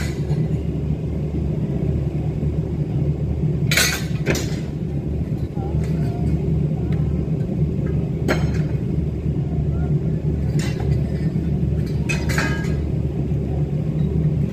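Steel scaffold tubes and couplers being handled during dismantling, giving about six sharp metallic clanks scattered over the stretch. Under them is a steady low rumble.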